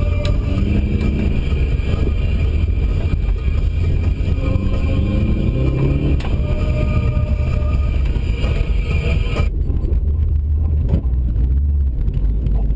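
Subaru WRX's turbocharged flat-four engine heard from inside the cabin, revving up with rising pitch twice over a steady low rumble. About nine and a half seconds in, the higher noise cuts off suddenly and only the low rumble is left.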